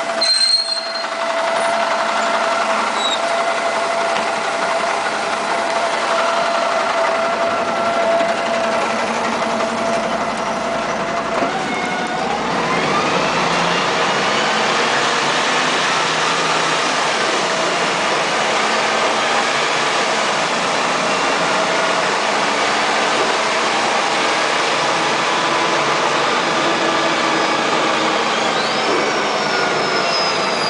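Jelcz M121MB city bus with a Voith automatic gearbox, standing with a steady hum for about ten seconds, then pulling away: from about twelve seconds in, the engine and transmission whine climbs in pitch as the bus accelerates. A higher whine rises and falls again near the end.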